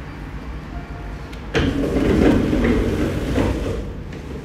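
Low background rumble, then a louder rushing noise that starts suddenly about a second and a half in and fades just before the end.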